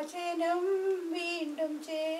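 A single high voice singing slow, drawn-out notes that glide smoothly from one pitch to the next.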